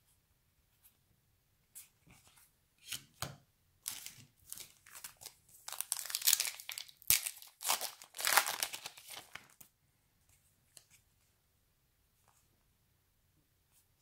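A Garbage Pail Kids retail trading-card pack wrapper being torn open and crinkled, a run of sharp rustles that builds to its loudest from about six to nine seconds in, then stops.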